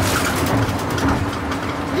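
Steady rumble of a moving passenger vehicle heard from inside the cabin, with a low, even hum under it.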